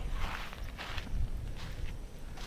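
Faint footsteps of a person walking on a concrete bridge and dirt track, a few soft steps at an uneven pace over a low rumble.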